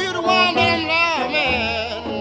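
Chicago blues record: a high lead line bends and slides in pitch over a plucked bass line that repeats evenly.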